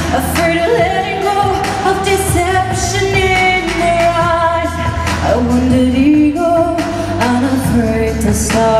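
A woman sings a pop song's lead vocal over a backing track with drums, amplified through an arena's sound system.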